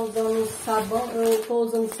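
A woman's voice speaking, drawn out, with no other sound standing out.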